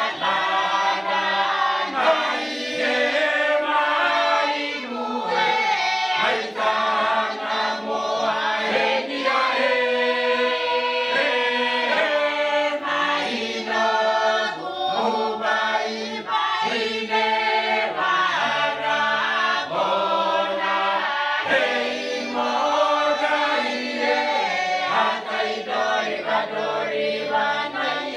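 Mixed choir of men and women singing a Motu peroveta hymn in close harmony, the chords held and moving without a break.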